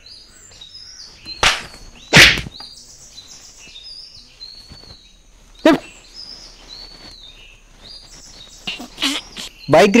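Birds chirping and tweeting throughout in short, high, stepped calls. Three loud sudden sounds cut across them, about a second and a half, two seconds and six seconds in, the second the loudest.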